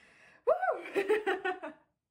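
A young woman gives a short exclamation, her voice rising and falling in pitch, then laughs in quick bursts for about a second.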